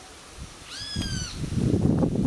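A single high meow, arching slightly in pitch and lasting about half a second, a little under a second in. From about a second in, a louder low rustling noise takes over and is the loudest sound.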